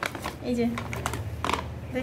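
Crinkling and clicking of a black plastic nursery bag and a seedling being handled while potting, a quick irregular run of short sharp ticks.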